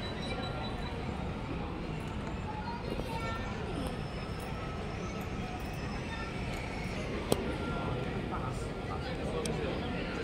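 Outdoor plaza ambience: indistinct background voices over a steady low rumble, with a single sharp click about seven seconds in.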